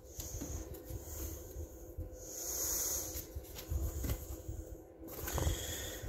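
Soft handling noise from a paper colouring book as its pages are fingered and turned, with a brief rustling hiss about two seconds in.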